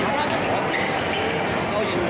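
Table tennis rally: a few sharp clicks of the ball off the rackets and table, about three quarters of a second in and again just after a second, over a steady murmur of crowd chatter.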